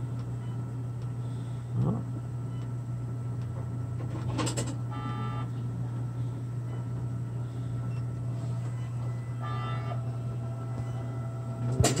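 Steady low hum from hospital equipment. Two short electronic tones sound over it, about five seconds in and again near ten seconds, with a single knock in between.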